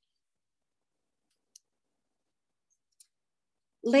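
Two faint, short clicks about a second and a half apart, in otherwise near silence.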